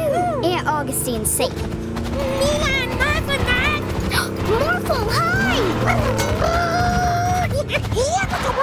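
Cartoon soundtrack of background music under short wordless voice sounds from the characters, gliding up and down in pitch.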